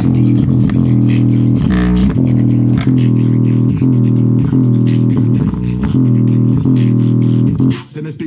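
JBL Xtreme (first generation) portable Bluetooth speaker, grille removed, playing bass-heavy music loudly, its woofers pushed to large excursions. The music dips briefly near the end.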